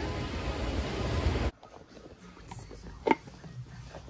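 Steady street noise on a wet city pavement, cut off abruptly about a second and a half in and followed by the quiet of a small shop, with one short faint sound about three seconds in.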